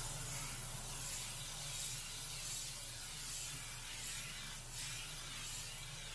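Omni 3000 airbrush hissing steadily as it sprays a light guide circle of paint onto a t-shirt, the hiss swelling and easing a little as the strokes go round.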